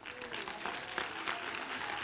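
Church congregation applauding, with a few faint voices among the claps.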